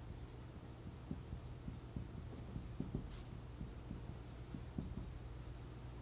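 Dry-erase marker writing on a whiteboard: faint, irregular strokes and squeaks as the words are written out.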